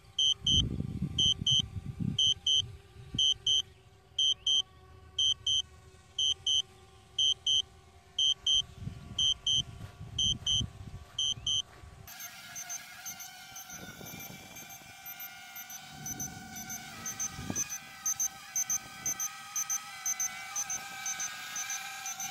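DJI Spark's remote controller beeping steadily in return-to-home mode: short double beeps a little more than once a second. About halfway through, the beeps turn higher and quicker over the wavering whine of the Spark's propellers as the drone descends overhead to land.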